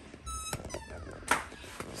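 Wooden wardrobe door squeaking briefly as it is pulled open, followed by a couple of clicks and a soft knock.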